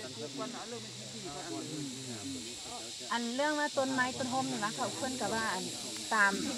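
People talking in a group, a voice growing louder about halfway through, over a steady high hiss.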